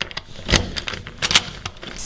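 Metal clicks and clacks of a door's lock and lever handle being worked as it is unlocked and opened, with the loudest clack about half a second in and a quick pair just past a second.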